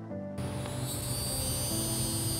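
Soft instrumental background music with sustained, piano-like notes. About a third of a second in, a steady outdoor background noise with a thin high-pitched hum comes in under it.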